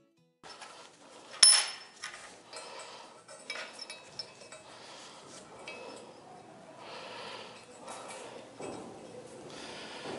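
Metal parts being handled on a steel welding table: a sharp metal clank about a second and a half in, then lighter clinks and scraping as a bent steel tube is fitted against a round steel boss.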